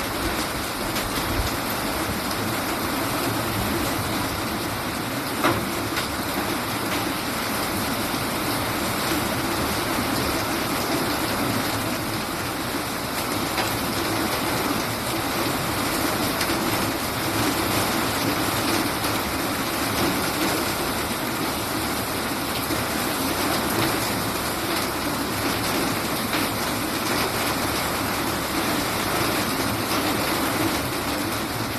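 Heavy rain pouring down in a steady, dense hiss, with a single sharp click about five and a half seconds in.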